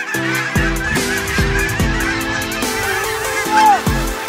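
A flock of Canada geese honking together continuously, over electronic music with a heavy bass beat; one louder honk stands out about three and a half seconds in.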